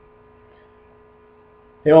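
Faint, steady electrical hum made of a few fixed tones, with a man's voice coming in near the end.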